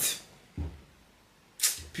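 A pause in speech: a soft low thump about half a second in, then a quick sharp breath with another low thump just before the man speaks again.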